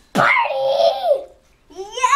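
A group of children cheering and laughing excitedly: one loud burst of voices lasting about a second, then a brief lull.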